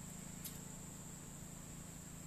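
Faint background: a steady low hum and a thin, steady high-pitched whine, with one faint click about half a second in.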